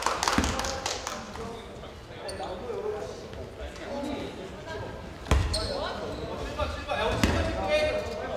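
A basketball bouncing on a hardwood gym floor a few times, the sharpest bounce about five seconds in, with players' voices calling in the echoing hall.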